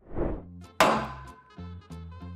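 A short whoosh, then a single sharp hit with a ringing tail just under a second in, followed by background music with a bouncing bass line.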